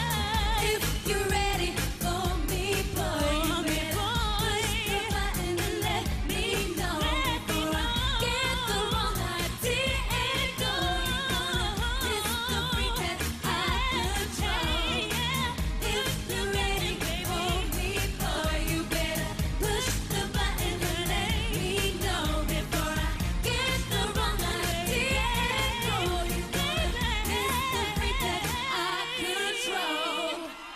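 Live pop song: three women singing over a band with drums, bass and keyboards. Near the end the bass and drums drop out, leaving the voices.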